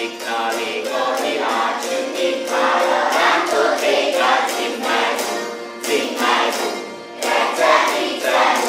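A citera (Hungarian zither) strummed in a steady rhythm while a group of voices sings a folk song along with it.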